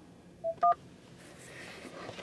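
Touch-tone (DTMF) beeps for the digit 1 from a car's touchscreen phone keypad: two short beeps close together about half a second in, selecting option 1 in an automated phone menu.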